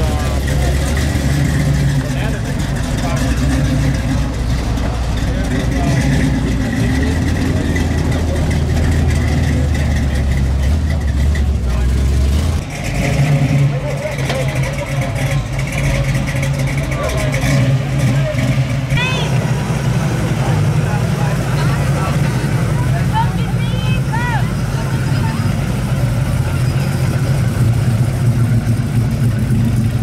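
Classic muscle-car engines running with a deep, steady exhaust note as the cars roll slowly past one after another. The engine sound changes about twelve seconds in as a different car takes over. Onlookers' voices chatter in the background.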